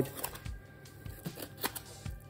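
Flexible filleting knife cutting down the centre line of a lemon sole on a plastic chopping board: a few faint, irregular clicks and scratches as the blade runs along the backbone.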